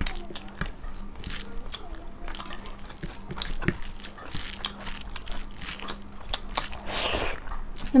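Close-miked eating sounds: chewing and wet mouth clicks as rice and chicken curry are eaten by hand, with many short sharp clicks throughout and a longer hissing sound about seven seconds in.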